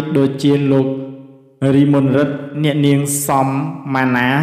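A man's voice reading news narration in Khmer in an even, steady-pitched delivery, with a short pause about a second and a half in.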